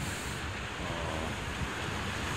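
Ocean surf breaking and washing over the rocks, a steady rushing noise. The surf is heavy because a swell is still running.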